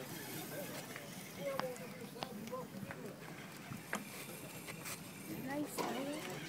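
Faint, indistinct background voices of people talking, with a few light clicks scattered through.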